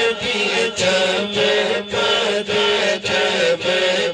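A man singing a naat unaccompanied through a microphone and PA, in melismatic phrases with brief breaks between them, over a steady low drone.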